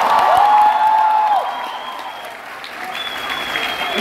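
Audience applauding and cheering, with a long held cheer in the first second and a shrill whistle later. The applause is loudest for about the first second and a half, then dies down.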